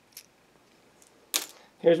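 Faint small plastic clicks from a hobby servo's case as its bottom cover is worked off by hand, with one sharper click a little over a second in. A voice starts talking at the very end.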